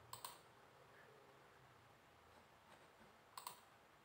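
Computer mouse clicking: a quick double click about a quarter second in and another about three and a half seconds in, with near silence between.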